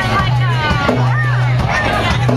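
Live band vamping on a steady groove: a low bass note held and restruck about twice a second under drum hits, with crowd chatter and voices over it.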